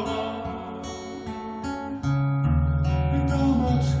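Acoustic guitar playing a short instrumental passage between sung lines of a romance: quieter single picked notes at first, then fuller, louder chords over steady bass notes from about two seconds in. A man's singing voice comes back in right at the end.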